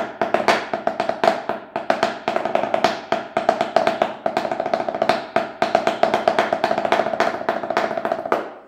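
Wooden drumsticks struck fast on a towel-covered practice surface, a dense run of rolls and louder accents in banda snare drum (tarola) style, the kind of fills players work into the ranchera rhythm.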